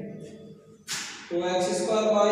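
A man's voice speaking Hindi, with a brief sharp hiss a little under a second in, just before his next word.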